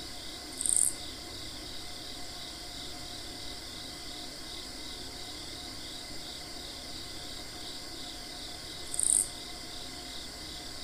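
A steady, evenly pulsing chorus of singing insects, with two brief, loud, high-pitched chirps, one about a second in and one near the end.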